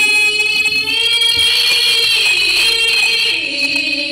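A woman singing one long, high held note on the word "you", sliding up into it at the start and dropping lower about three seconds in.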